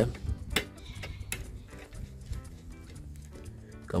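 A few light, scattered clicks of a screwdriver working a screw terminal on a power supply's terminal block as a wire is fitted under it, mostly in the first two seconds, over faint background music.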